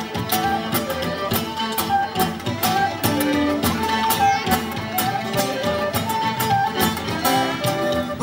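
Irish folk band playing an instrumental passage: a fiddle carries the melody over a steady bodhrán beat, with guitar accompaniment.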